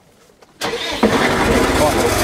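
Tractor and its PTO-driven flail mulcher starting up suddenly about half a second in, jumping louder again at about a second, then running steadily.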